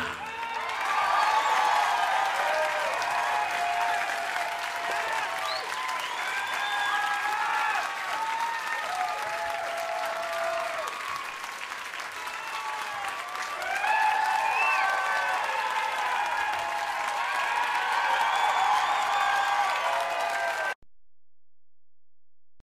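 Audience clapping and cheering, with many whoops and shouts over the applause, which swells twice and cuts off abruptly near the end.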